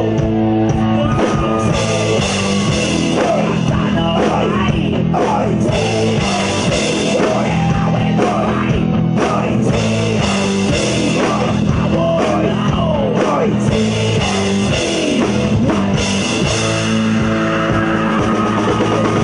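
Live rock band playing loud and steady: electric guitars, bass guitar and drum kit, with gliding lead lines over the top.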